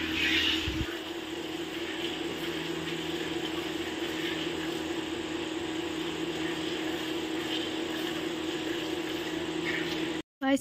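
A buffalo being milked by hand into a steel pot: milk streams hissing into the frothy milk already in the pot, over a steady low electrical hum.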